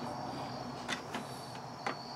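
A putty knife and wet, epoxy-soaked denim handled in a disposable aluminium foil pan, giving a few light clicks and scrapes in the second half over a faint steady high whine.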